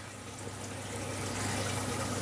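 Steady running-water sound of a reef aquarium's water circulation, with a low steady hum, growing slightly louder towards the end.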